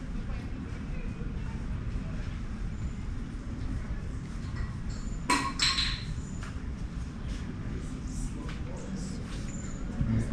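A steady low rumble, with two sharp clicks about halfway through, under half a second apart.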